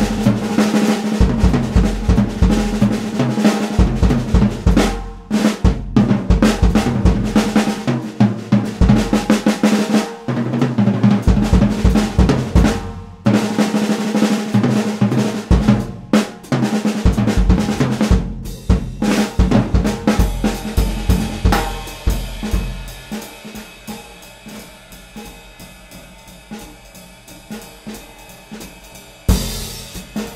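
Slingerland 1960s drum kit (20" bass drum, 12" and 14" unmuffled toms, mahogany and poplar shells) with a Craviotto 6.5x14" titanium snare, in a middle tuning with a pinstripe bass drum head, played with sticks in a busy jazz solo. For about twenty seconds the snare, toms and bass drum are played loudly and densely. The playing then drops to quieter cymbal and light strokes, with one loud accent just before the end.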